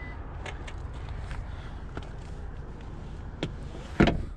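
Steady low rumble of outdoor background noise, with a few faint clicks and one sharp click at the very end.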